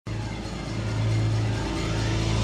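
Opening ident music: a steady low droning tone with overtones that slowly grows louder.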